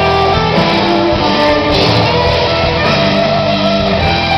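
Live rock band playing an instrumental stretch, led by electric guitars over bass and drums, loud and steady.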